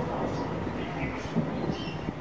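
A steady low rumble, with short high bird chirps every half second or so.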